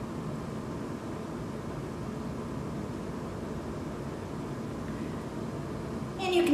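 Steady low background hum and hiss of room tone, even throughout with no distinct events; the lipstick gliding over the lips is not distinctly heard.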